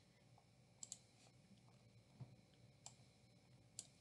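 Near silence broken by a few faint clicks at a computer: a quick pair about a second in, then single clicks later, as a presentation slide is advanced.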